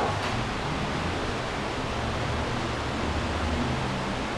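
Steady, even hiss of room and recording background noise, with a faint low hum underneath.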